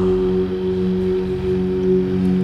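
Steady drone of the devotional backing music, holding one low pitch with a few overtones, unchanging.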